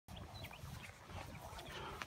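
Faint outdoor background with a few faint, short animal calls scattered through it.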